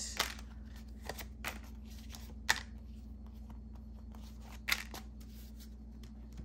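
Cards being drawn from a deck and laid down on a cloth-covered table: light slaps and rustles of card stock, with sharper snaps just after the start, about two and a half seconds in and near five seconds, over a low steady hum.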